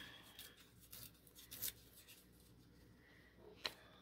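Near silence with faint handling of a paper scrap as its edges are torn by hand: a few soft rustles in the first two seconds and one sharp tick near the end.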